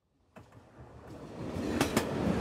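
A train running on rails fades in out of silence and grows louder, with sharp clicks of wheels over rail joints starting near the end.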